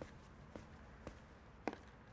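Quiet room with two short taps of footsteps on a hard wooden parquet floor, a faint one about half a second in and a sharper one near the end.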